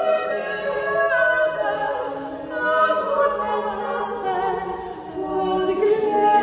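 A four-voice women's vocal ensemble singing a cappella, holding chords whose notes move in steps, in a church's reverberant acoustics.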